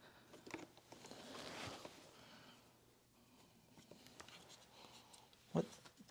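Faint handling and scraping of the plastic handle housing of a canister vacuum being worked loose by hand, with one short, sharper sound near the end as the piece comes free.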